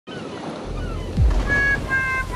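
Ocean surf washing in an intro soundscape; about a second in, a low falling boom hits and sustained musical notes come in.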